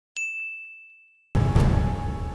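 A single bright notification-bell ding, struck once with a clear ringing tone that fades away over about a second. About 1.3 s in, background music cuts in abruptly with a loud low hit and sustained tones.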